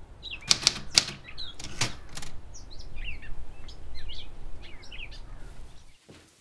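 Small birds chirping, many short falling chirps, with a few loud sharp flutters in the first two seconds, over a low steady rumble; it all cuts off at the end.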